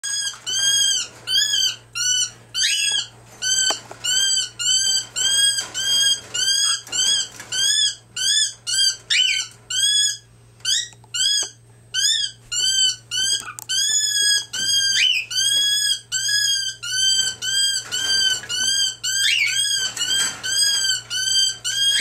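Cockatiel calling over and over, the same high arched note repeated about two to three times a second, with a few quick rising calls mixed in.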